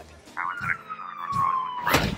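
A police siren wailing, one long tone falling in pitch, ended by a sudden sharp hit near the end.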